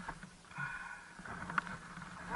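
Quiet lull with snowmobile engines idling faintly as a low hum, and a single short click about one and a half seconds in.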